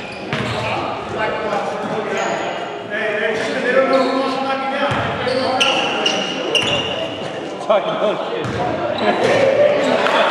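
Players' voices talking and calling out in a reverberant gymnasium, with a basketball bouncing on the hardwood court in a few sharp thumps.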